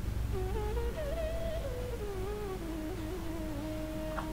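Faint humming: a single soft melodic line that wavers slowly up and down in pitch, over a low steady background rumble.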